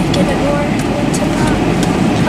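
Steady rumble of a Mercedes-Benz car's engine and tyres heard inside the cabin while it is driven slowly under light throttle.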